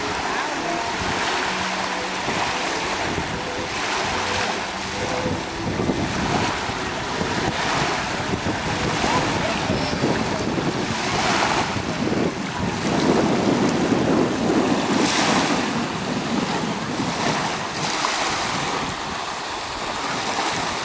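Small sea waves breaking and washing up a sandy beach in a steady rush, with wind buffeting the microphone. The surf swells several times, most strongly about two-thirds of the way through.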